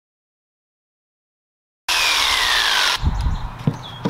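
Silence for about the first two seconds, then an electric jigsaw cutting a wooden bed footboard, its motor whine falling steadily as it winds down. A few sharp wooden knocks follow near the end as the cut-off spindle piece is handled.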